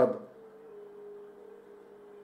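A faint steady hum, one held tone over a low background hiss, with the tail of a man's word at the very start.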